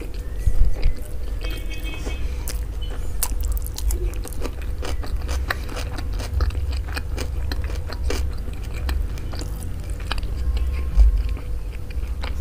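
Close-miked chewing of mansaf, yogurt-soaked rice with meat eaten by hand, with many small wet mouth clicks throughout. Soft squelches come from the rice being squeezed into a ball in the hand.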